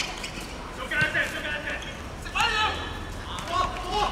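Footballers shouting short calls on the pitch, three brief shouts spaced across a few seconds over steady outdoor background noise, with a single sharp thud about a second in.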